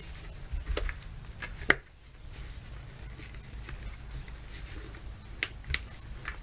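Hands working a sweatband's clips onto an M1C helmet liner: faint handling and rubbing with a few sharp clicks, the loudest a little under two seconds in and two quick ones near the end, as the clips snap on.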